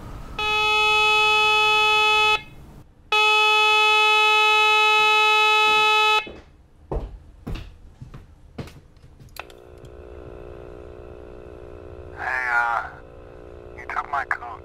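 A loud electronic buzzer tone sounds twice, about two seconds and then about three seconds long, with a short break between. A few knocks follow, then a quieter, lower steady hum begins, with two short wavering sounds near the end.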